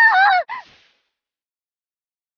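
A girl's high-pitched, drawn-out shout in an anime voice, wavering in pitch and breaking off about half a second in, with a short final cry after it.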